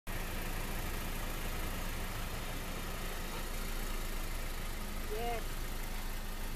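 2012 Acura TSX engine idling steadily.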